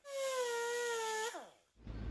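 Small cut-off wheel tool running with a steady high whine for just over a second, then winding down in pitch as it is let off.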